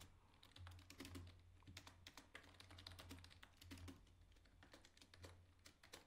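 Faint typing on a computer keyboard: irregular key clicks, several a second, as a line of code is keyed in.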